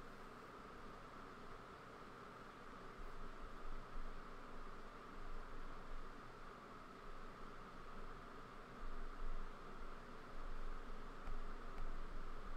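Quiet, steady hiss of microphone and room noise, with small swells in level but no distinct events.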